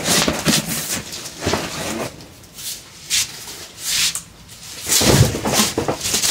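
Cardboard boxes and their plastic wrapping being handled: a string of separate rustles, scrapes and bumps about a second apart, the loudest about five seconds in.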